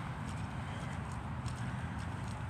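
Footsteps of a person walking on grass, over a steady low background rumble.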